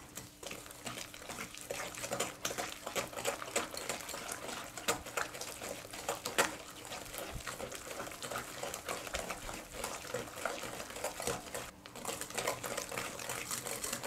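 Hand-held wire whisk beating an egg into creamed butter and sugar in a glass bowl: a fast, irregular run of clicks and scraping as the wires hit the glass and churn the batter, with a brief pause just before the end.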